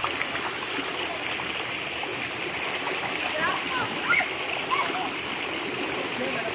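Shallow forest stream running steadily, with children splashing in the water. High children's voices call out over it in the second half.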